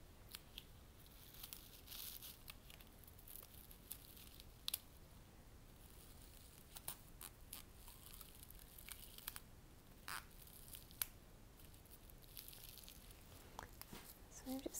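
Faint rustling and crackling of a bunch of dry grass stems being handled and bound together into one bundle, with a few sharp small clicks scattered through.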